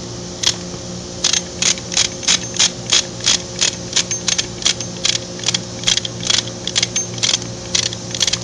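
Orange lever chain hoist being pumped by hand, its ratchet and pawl clicking about three times a second as the chain is tightened to draw a spigot end into a socket joint of 150 plastic pipe. A steady low hum runs underneath.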